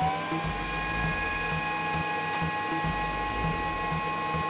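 Vacuum cleaner motor that has just spun up, running with a steady whine over a regular low pulsing.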